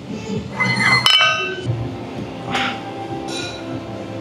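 A weight plate slid onto a steel barbell sleeve, giving one sharp metallic clink about a second in that rings briefly.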